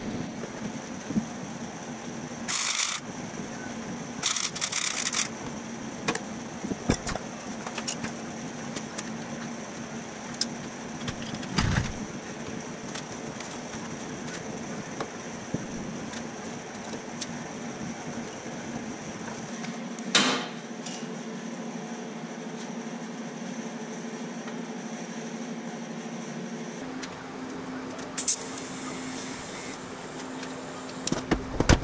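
Two short bursts of MIG welding a few seconds in, tack welds on a steel steering-box flange, over a steady shop hum. Scattered knocks and clanks of steel parts being handled follow.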